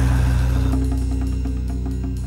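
Pit band holding the closing chord of a musical-theatre song, slowly fading, with light, quick high taps coming in partway through.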